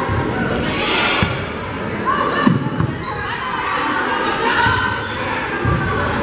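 Volleyball rally in a gym: several sharp smacks of the ball on players' arms and hands, heard against players' calls and crowd voices echoing in the hall.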